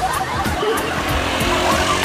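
Road traffic noise, a car's engine and tyres on the street, under background music.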